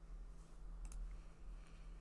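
Faint computer mouse clicks, two in quick succession a little under a second in, over a low steady hum.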